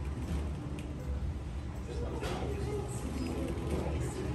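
Café background sound: indistinct voices over a steady low hum of machinery, with a brief clink about two seconds in.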